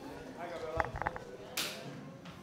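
Low murmur of voices in a room, with a quick run of sharp clicks about a second in and a short hiss just before the end.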